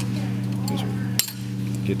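Light metallic clinks of steel pliers against the rear axle's retainer plate and brake hardware, with one sharp click about a second in, over a steady low hum.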